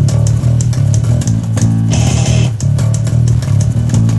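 Electric bass played fingerstyle, its held low notes prominent, over a loud full-band rock track with drums and crashing cymbals.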